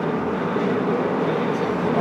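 Steady road and engine noise inside the cabin of a car driving at highway speed.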